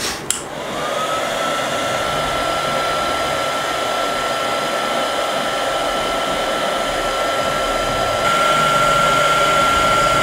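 Handheld hot-air heat gun blowing steadily. A click comes just after the start, and the fan whine rises in pitch over the first second as it spins up, then holds one steady tone over the rush of air. It gets a little louder about eight seconds in as it shrinks heat-shrink tubing over the wires.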